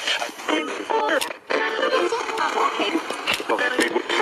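Handheld digital radio used as a spirit box, sweeping through stations: choppy snatches of music and voices that cut from one to the next every fraction of a second.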